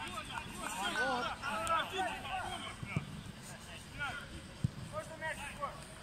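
Players' voices calling and shouting across an outdoor football pitch, with two sharp thuds of the ball being kicked, about three seconds in and again between four and five seconds in.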